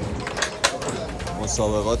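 Domino tiles clacking against the tabletops as players lay and handle them, several sharp clicks in the first second, over background chatter; a man's voice starts near the end.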